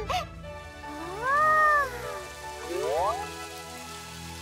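A cartoon character's wordless, cat-like voice: a drawn-out rising-then-falling "ooh" about a second in, then a quick upward swoop near three seconds, over light background music.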